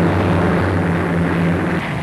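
Propeller engine of a biplane droning steadily as it flies past, slowly fading.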